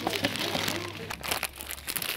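Crinkling and rustling of clear plastic packaging as a wrapped set of kitchen cloths is handled, a dense run of small crackles in the second half.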